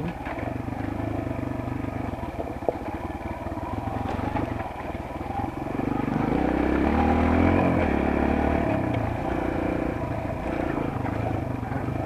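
Kawasaki KLX140G dirt bike's single-cylinder four-stroke engine running under way on a loose gravel trail. It revs up about six seconds in and eases back off around eight seconds, with a couple of sharp ticks from stones a few seconds in.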